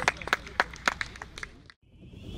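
Scattered handclaps from a few people, sharp and irregular, thinning out and fading to silence near the end.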